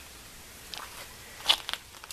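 A few short crunching footsteps on gravel, the sharpest about one and a half seconds in.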